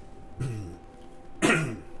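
A man coughing twice into his fist: a smaller cough about half a second in, then a louder one near the end.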